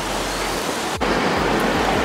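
Steady rushing outdoor noise with a brief break about a second in, after which it is a little louder.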